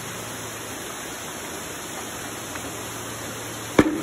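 Steady rushing of water running in fish-farm tanks, with one sharp knock near the end.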